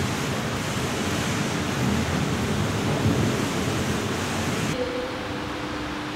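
Steady rushing noise with no clear pitch. About five seconds in it drops to a quieter room hum with a faint steady tone.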